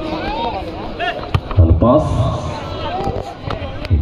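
A man's voice commentating on a football match, with a few sharp knocks.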